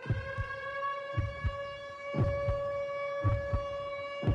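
Opening of a hip hop dance routine's music mix: a heartbeat sound effect, paired low thumps about once a second, over a steady high held tone.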